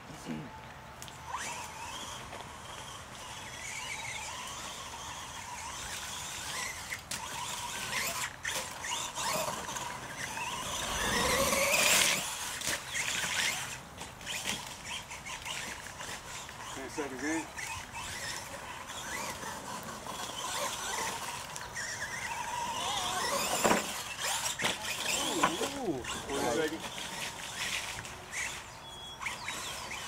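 Radio-controlled monster truck driving through mud, its motor and gears whining and rising and falling in pitch as the throttle is worked. The loudest sweep upward comes a little before halfway through.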